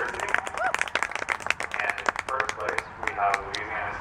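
Scattered clapping from a small audience, irregular hand claps throughout, with a few voices in the crowd.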